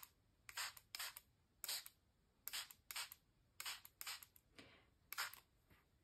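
Handheld trigger spray bottle spritzing water onto a paper journal page, about nine short hissing sprays in quick succession. The mist wets water-soluble graphite so that it runs.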